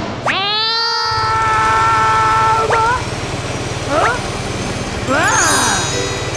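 A cartoon character's high vocal cry that rises at the start and is held for about two and a half seconds, followed by short gliding squeaky vocal sounds. From about a second in, a steady low rumble of roller-skate wheels rolling runs beneath.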